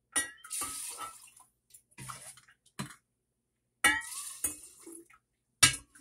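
Apple cider vinegar poured from a metal cup into a glass jar in several short pours, each starting with a clink of metal as the cup scoops from a stainless steel bowl, followed by splashing into the jar.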